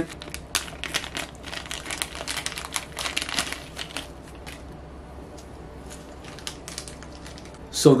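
Plastic packaging crinkling and rustling as it is opened by hand, dense for the first few seconds, then quieter after about four seconds with a few faint clicks.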